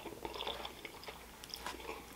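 Close-miked chewing of a mouthful of spaghetti with meat sauce: soft, wet mouth sounds with faint small clicks.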